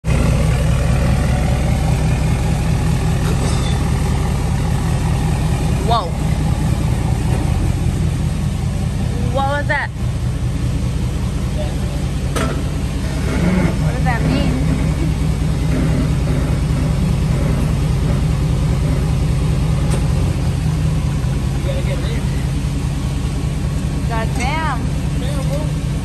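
A steady low mechanical hum, like a motor or engine running, with a few short knocks and faint voices over it.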